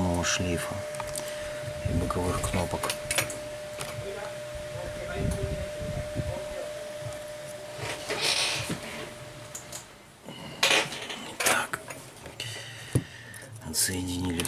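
Small clicks, taps and rustles from an opened Sony Xperia M4 Aqua and tools being handled on a work mat during disassembly. A thin steady tone hums in the background and stops about two thirds of the way through.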